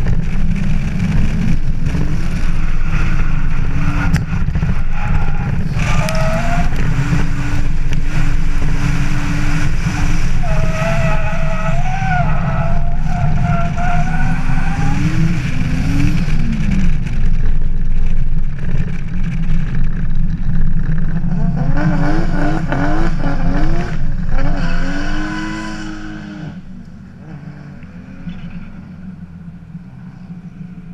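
Nissan Laurel (C35) drift car's engine running under way, its revs rising and falling over a heavy rumble. About 25 seconds in it drops to a much quieter idle as the car comes to a stop.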